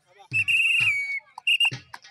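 A referee's pea whistle blown in one long trilling blast that dips slightly at its end, followed by two short blasts. It signals a stop in play after a raider is tackled and pinned.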